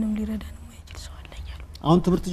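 Only speech: a voice talks, stops about half a second in, then after a lull of faint, low talk a voice comes back loudly near the end.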